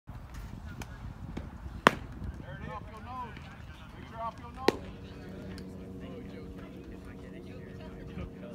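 Baseball pitches popping into a catcher's mitt, two sharp smacks a little under three seconds apart, with a few lighter clicks before the first. Voices call out between the two pops, and a steady hum comes in after the second.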